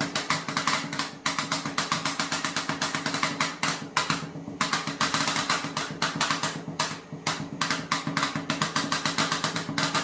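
Two metal spatulas chopping rapidly on the frozen steel plate of a rolled ice cream pan, mashing banana into the setting ice cream base: a fast, even metallic tapping, several strikes a second, with brief pauses about four and seven seconds in. A steady low hum runs underneath.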